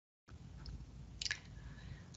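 Quiet room tone with one faint, short click about a second and a quarter in.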